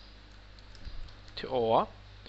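A few faint computer-keyboard keystrokes as code is typed into a text editor, over a low steady electrical hum.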